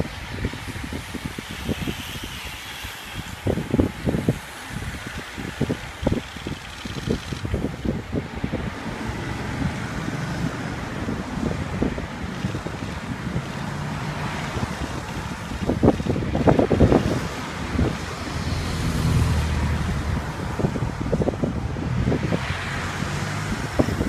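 Road racing bicycles passing in a stream with the whoosh of their tyres, while wind buffets the microphone in repeated low thumps. A car drives past around the middle, its engine humming low for several seconds.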